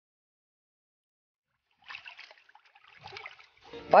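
Water sloshing and splashing in a plastic bucket as a hand stirs fertilizer into it to dissolve it, in a few short bursts starting about halfway through, after near-total silence.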